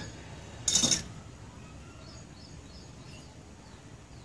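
A metal jar lid being handled, with one short scraping clink about a second in. Faint bird chirps follow in the background.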